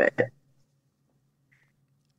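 A woman's voice ends a sentence with one short word, then a pause of near silence in which only a faint steady low hum remains.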